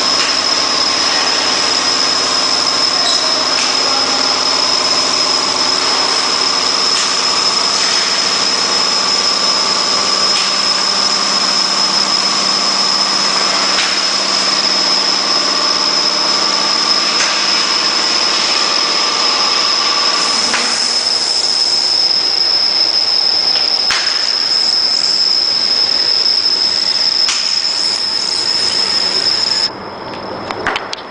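YFML920 semi-automatic roll laminator running: steady mechanical running noise with a high, constant whine over it. The lower part of the sound changes about two-thirds of the way in.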